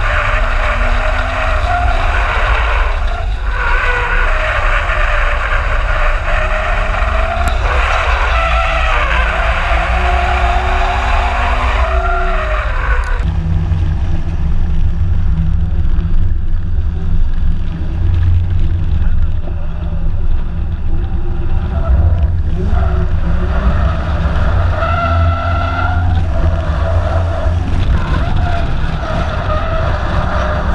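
Ford Falcon drift cars sliding, with the engine note rising and falling over tyre skid noise and wind on the car-mounted microphone. About 13 s in the sound changes abruptly to a heavier low rumble, with the engine pitch still wandering.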